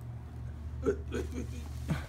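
A few short wordless vocal sounds about a second in, and a brief one rising in pitch near the end, over a steady low hum.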